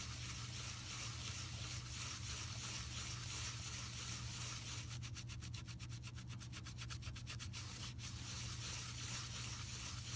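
Alcohol-soaked kitchen sponge scrubbing dried paint on a plastic spreader, a soft, steady rubbing. In the middle it quickens into a rapid, even run of strokes. The alcohol is reactivating the dried paint so it lifts off.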